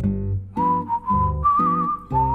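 Background music: a whistled melody of long held notes, stepping up to a higher, wavering note partway through, over plucked acoustic guitar chords.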